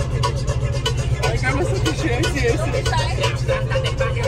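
Dance music with a steady beat playing loud inside a moving bus. Voices come over it in the middle, and the bus's low rumble runs underneath.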